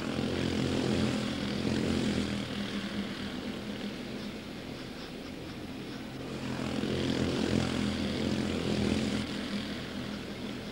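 A pack of quarter midget race cars with Honda 160 single-cylinder engines running flat out on the oval. The many-engine buzz swells loud twice as the pack passes close by.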